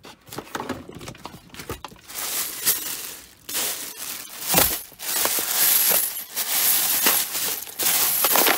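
Plastic carrier bag rustling and crinkling as it is handled and unwrapped, with coins clinking inside it. The rustling gets loud and continuous from about two seconds in, with a sharp clink near the middle.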